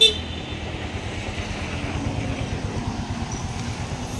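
Steady street traffic rumble of passing vehicles, with a short, high toot right at the start.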